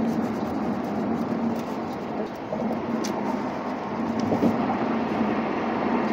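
Steady road and engine noise heard inside a car's cabin as it drives on the freeway, with a constant low hum under the tyre rush. A few faint ticks come from inside the car.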